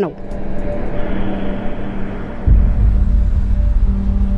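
Film soundtrack: a steady low droning hum over a noisy wash, joined about halfway by a sudden deep rumble that carries on.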